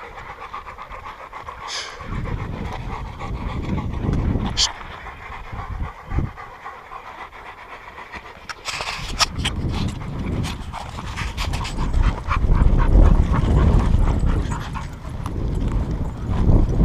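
Several dogs panting rapidly close to the microphone. A low rumble comes in about two seconds in, and in the second half there are many short crunching steps on a dirt trail.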